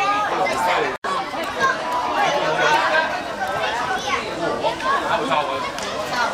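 Overlapping chatter and calls of many young voices, spectators and players, with no single clear speaker. The sound cuts out briefly about a second in.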